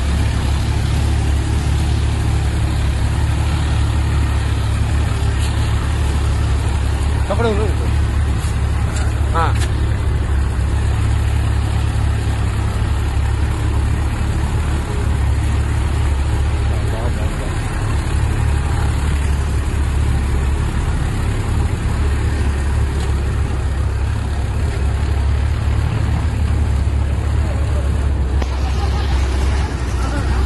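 Small tractor's diesel engine running steadily under load as it tows a trailer through deep floodwater, a continuous low rumble.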